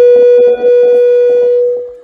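A loud held musical note at one steady pitch, horn-like, with a short break about half a second in and fading out near the end.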